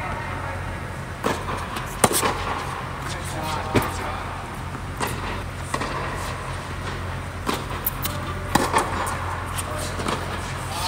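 Tennis balls struck by racquets and bouncing during a doubles rally on an indoor hard court: sharp pops about every second, over a steady low hum. Faint voices come in now and then.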